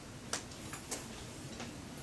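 A quiet room with four short, sharp clicks at uneven intervals; the first one, about a third of a second in, is the loudest.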